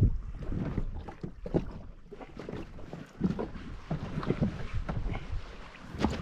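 Wind buffeting the microphone and water slapping against a drifting jet ski's hull, with irregular small knocks.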